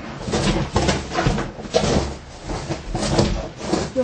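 Irregular knocks, scrapes and rustles of a cardboard box being handled and worked on.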